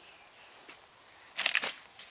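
Clear plastic bags around new chrome trim pieces crinkling briefly as they are handled, about one and a half seconds in.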